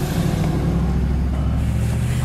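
Vehicle engine and road noise heard from inside the cabin while driving: a steady low drone.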